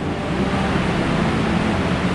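A steady rushing noise, spread evenly from low to high pitch.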